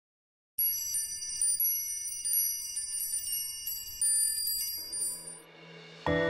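Silence, then about half a second in, a dense shimmer of high ringing chime tones starts suddenly, like a wind chime or bell tree opening a piece of music. The chimes fade near the end as a low tone swells in.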